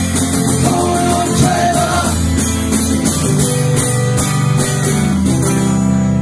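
Amplified acoustic guitar strummed hard in steady chords, with a few sung notes about a second in, ending on a ringing final chord near the end.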